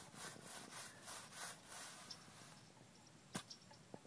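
A dog sniffing in quick, faint strokes, about five a second, fading after about two seconds, with one sharp click about three and a half seconds in.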